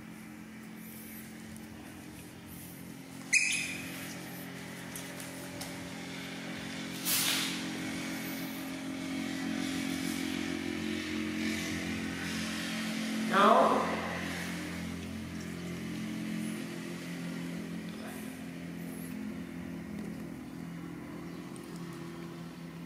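A steady low mechanical hum, like a motor running, with a sharp click about three seconds in and a short rising squeal about halfway through.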